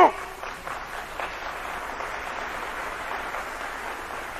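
Audience applause in a lecture hall, steady throughout, with a faint voice under it near the start.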